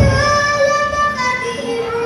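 A young girl singing into a microphone over a sound system, holding long notes that slide from one pitch to the next. There is a low thump right at the start.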